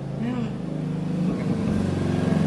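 An engine running at a steady pitch, growing a little louder near the end.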